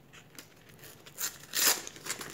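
Foil Panini sticker packet crinkling in the hands, in short bursts during the second half.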